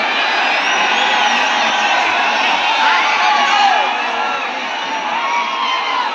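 Large crowd shouting and cheering, many voices overlapping in a steady din, with occasional whoops rising above it.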